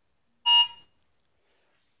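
A single short electronic beep from a smartphone about half a second in, lasting about a third of a second: the alert as its QR-code scan fails.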